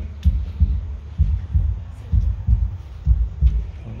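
Deep heartbeat sound effect playing on a loop: double thumps, lub-dub, about once a second.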